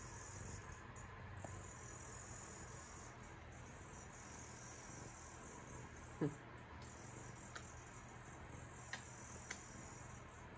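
Quiet background with a faint, steady high-pitched buzz, a few soft clicks, and one brief louder rising sound about six seconds in.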